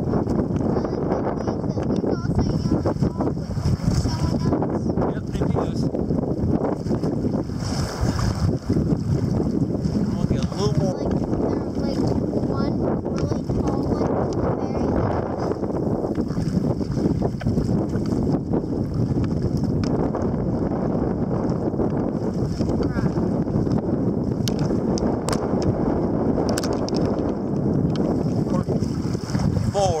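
Steady wind noise on the microphone mixed with water sloshing and splashing against a kayak's hull on choppy water.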